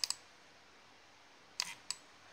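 Computer mouse button clicks: one right at the start, then a pause, then two sharp clicks about a third of a second apart near the end.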